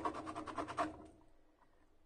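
Cloth rubbing over an inked rubber stamp to wipe it clean: a quick run of scratchy strokes that stops about a second in.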